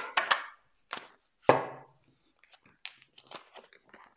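A tarot deck being shuffled by hand: a few quick card-slapping strokes, a louder single tap about one and a half seconds in, then faint ticks of the cards being handled.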